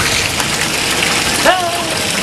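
Steady rush of running water in a backyard fish pond, with a voice briefly about one and a half seconds in.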